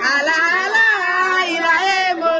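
High-pitched women's voices singing, with long held notes that bend up and down.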